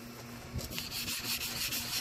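Emery board rubbing back and forth on an oxidised plastic headlight lens, grinding off a heavy haze and scale; a dry rasping scrape that picks up about half a second in.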